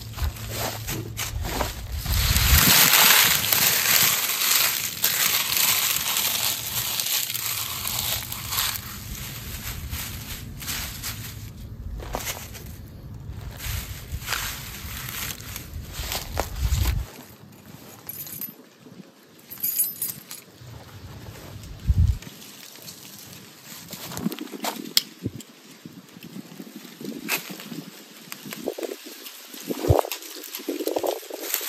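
Dry kudzu leaves crinkling and crunching as they are handled and crushed by hand into tinder. The crushing is dense and loud for the first half, then thins to scattered crackles and rustles.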